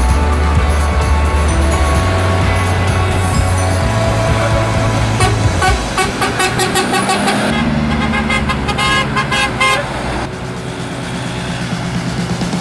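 Background music mixed with road traffic, with car horns tooting in the middle of the stretch.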